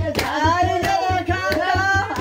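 Group singing with steady, rhythmic hand clapping keeping time.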